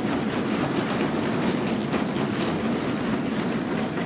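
Steady applause from many people in a large chamber.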